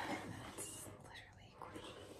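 Mostly quiet: a woman's voice trails off and fades into a faint whisper, with little else to hear.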